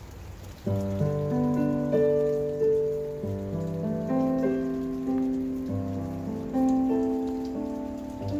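Hymn music from handbells with an electric keyboard starts about a second in. Struck chords ring out and fade one after another, over a steady hiss.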